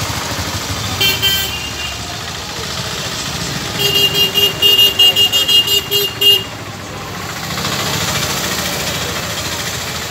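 Busy street traffic noise with a vehicle horn: one short honk about a second in, then a rapid string of short beeps at the same pitch lasting about two and a half seconds.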